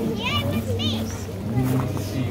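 Voices, among them a child's high-pitched voice, over a steady low hum.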